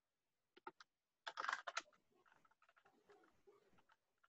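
Faint computer keyboard typing: a few keystrokes about half a second in, a quicker, louder run of keys around a second and a half, then soft scattered tapping.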